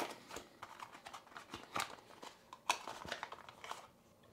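Cardboard packaging being handled: light, irregular rustles and clicks as a folded card insert is worked open and a coiled cable is taken out of the box.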